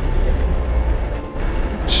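Steady low rumble of city street traffic, with a short whispered "shh" near the end.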